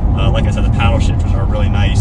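Steady low drone of a 2020 Chevrolet Corvette C8 Stingray on the move, heard from inside the cabin: V8 engine and tyre noise at an even cruising pace, under a man talking.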